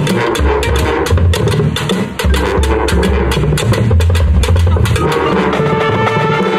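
Marching band playing, with drums and mallet percussion prominent: a dense run of quick strikes over sustained low bass notes.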